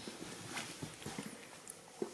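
A few faint, soft taps and rustles from a baby monkey shifting about on a bed's sheet and pillows.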